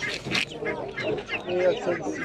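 Chickens clucking in a series of short calls, with people talking over them.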